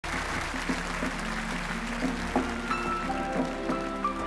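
Grand piano playing slow single notes and chords as the opening of a song, under audience applause that dies away over the first two seconds.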